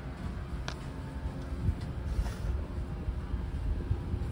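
Steady low rumble of background noise inside an aircraft cabin under maintenance, with a sharp click a little under a second in and a couple of fainter ticks later.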